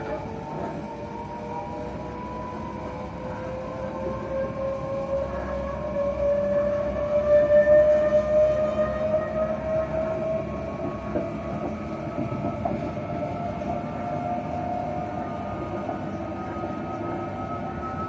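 Electric train's traction motors whining, heard from inside the carriage over the rumble of the running train; the whine climbs steadily in pitch as the train gathers speed, and the sound is loudest about halfway through.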